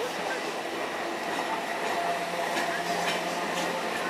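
Suburban EMU electric train creeping slowly alongside the platform: a steady running noise with faint motor tones, and a low hum that comes in about two seconds in.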